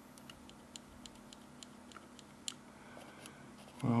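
Faint, irregular small clicks and ticks of a multimeter probe tip scraping and tapping across the pins of an IC, over quiet room tone.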